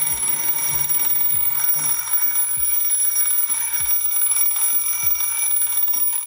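Twin-bell alarm clock ringing steadily, its hammer beating the two bells in one continuous ring.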